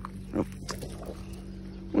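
A steady low hum, with a short exclaimed "oh" from a person just under half a second in and a few faint clicks soon after.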